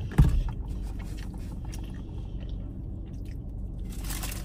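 A dull thump just after the start, then faint chewing and the rustle of a paper food wrapper being handled, over a steady low hum inside a car.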